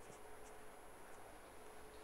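Faint scratching of a pen writing on paper, a few short strokes, over a steady low hum and hiss.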